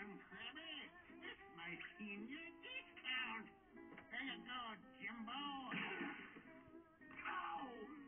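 Cartoon dialogue and background music playing from a television, heard faintly through the room.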